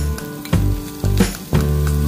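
Hot oil sizzling in a frying pan as chopped pechay is tipped in on top of fried tofu, under background music with a steady bass line and a beat.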